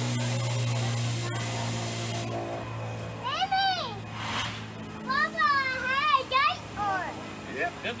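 Children's excited calls, several high voices whose pitch rises and falls, repeated through the second half. A steady low hum fades out about two seconds in.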